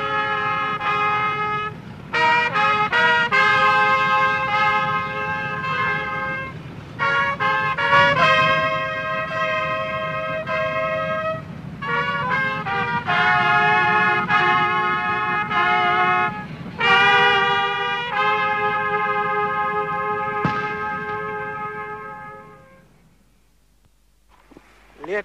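Brass fanfare: several brass instruments play held notes in harmony, broken by short quick figures, and the music fades out near the end. A steady low rumble lies underneath.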